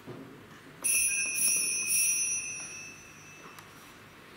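Altar bells rung at the elevation of the chalice during the consecration. A bright ringing starts suddenly about a second in, is shaken several times, and dies away over about two seconds.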